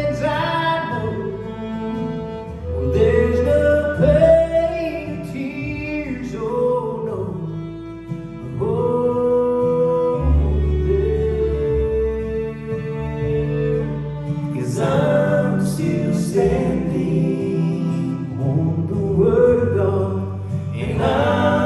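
Live bluegrass gospel band playing and singing: acoustic guitars, upright bass and fiddle under a sung melody with harmony voices.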